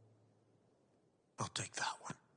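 A low, sustained musical note fades out into near silence; about one and a half seconds in, a few words are whispered.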